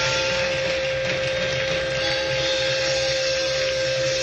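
Electric guitar holding one long steady note over a dense wash of live band and crowd noise, as a rock song reaches its close.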